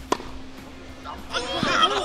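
A tennis racket strikes the ball once, a single sharp crack just after the start. Spectators' voices start calling out near the end.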